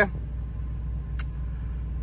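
Steady low drone from the running machinery of a parked semi truck, heard inside its cab, with one short click about a second in.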